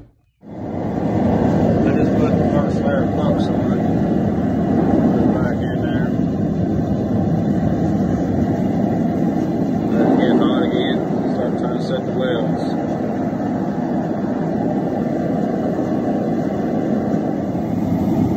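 Gas forge burner running, a steady rushing noise that starts about half a second in and holds through, with steel heating inside for a forge weld.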